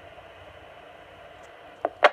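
Open police radio channel hissing with static between voice traffic, then a short click near the end as the transmission drops off.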